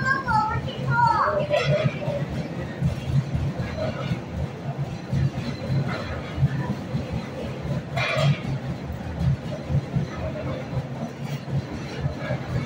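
Small coin-operated kiddie ride turning, its motor and rotating platform making a steady low rumble. Voices are heard over it in the first two seconds, and a brief sharper sound comes about eight seconds in.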